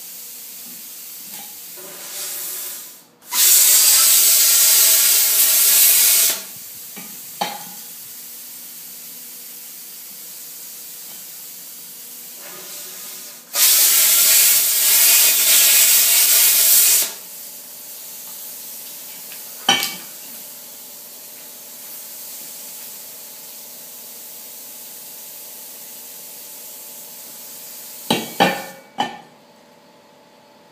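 Handheld plasma cutter cutting through thick-walled rectangular steel tubing: two loud bursts of hissing arc, each about three seconds long, with a lower steady hiss between them. A few metallic clinks near the end.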